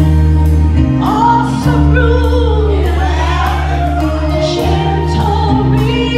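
Gospel worship team singing together over instrumental accompaniment, with long held bass notes and a steady beat under the voices.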